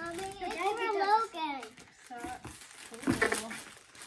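A young child's high voice vocalising with its pitch sliding up and down, not forming clear words, followed about three seconds in by a brief rustle of gift packaging.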